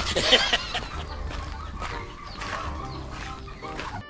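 Chickens clucking, with a few short calls, the loudest in the first half-second.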